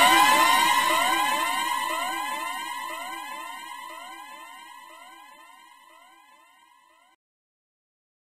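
Electronic dub siren effect at the end of a dancehall mix: a rapid string of short rising sweeps, repeating a few times a second, fading steadily out to silence near the end.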